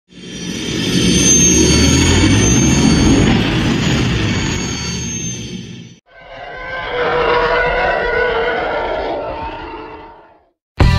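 Intro sound effects under logo cards: a loud rumbling whoosh with a high whistle that swells in over about a second and slowly fades, cut off sharply about six seconds in, then a second, more tonal swell that fades away near the end.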